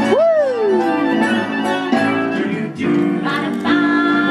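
Background pop song with singing and instruments. In the first second a note swoops up and then slides down.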